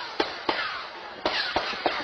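Several sharp gunshots in an irregular string, picked up by a home surveillance camera's microphone, which gives them a thin, band-limited sound.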